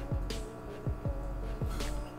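Background music with a beat: deep bass drum hits that drop in pitch, with sharp higher drum strikes between them.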